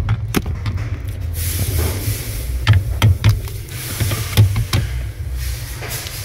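Scattered light clicks and knocks of parts being handled under the dashboard in the driver's footwell, about eight in all and unevenly spaced, over a low steady rumble with a faint hiss.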